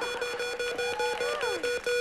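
The Price Is Right Big Wheel spinning, its pegs clacking past the flapper in a rapid, even run of ringing clicks that gradually spaces out as the wheel slows.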